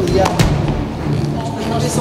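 Two sharp thuds about a quarter and half a second in, over background music and indistinct voices.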